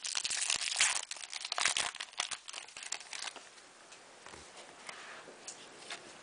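Foil trading-card pack (2003-04 Upper Deck Finite basketball) being torn open and crinkled by hand: a dense crackling for about three seconds, then it dies down to faint rustles and clicks as the cards come out.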